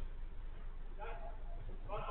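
Players' voices carried across a five-a-side football pitch as picked up by a distant security-camera microphone: one shout about a second in, over a steady low hum, with faint knocks of play.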